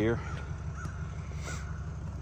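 A crow cawing a couple of times, short harsh calls, over a steady low hum.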